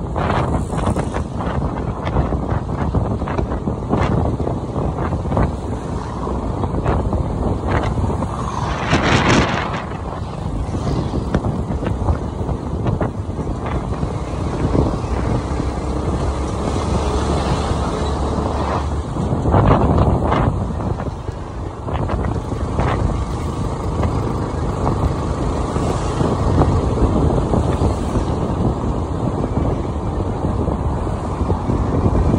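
Wind buffeting the microphone of a riding motorbike over the low noise of the bike and road, with louder gusts about nine and twenty seconds in.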